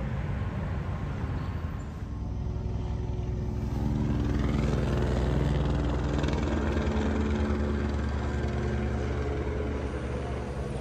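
Helicopter overhead: a steady low drone of rotor and engine that grows louder about midway and then eases a little. Before it, for the first couple of seconds, general outdoor street noise.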